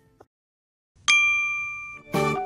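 Near silence, then about a second in a single bright ding, a chime sound effect that rings on and fades away as an animated logo begins.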